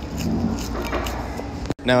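Steady low rumble of a busy cafeteria, with faint voices in the background. It cuts out abruptly near the end, just before a man starts speaking.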